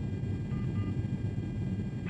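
Steady low rumble of a KC-135 tanker in flight, engine and airflow noise heard inside the boom operator's pod during aerial refuelling.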